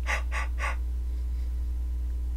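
Three short breathy noises from a man in quick succession in the first second, over a steady low hum.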